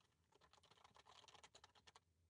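Very faint computer keyboard typing: a quick, irregular run of key clicks that stops just before the end.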